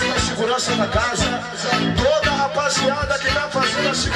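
Live Bahian pagodão band music: a dense, steady percussion beat with electric guitar and melodic lines over it.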